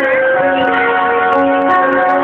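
Flute playing a slow melody, held notes moving from one to the next about every half second, over acoustic guitar accompaniment.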